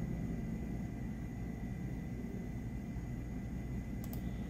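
Steady background noise: a low hum with a faint hiss and a thin, constant high whine, with no distinct events.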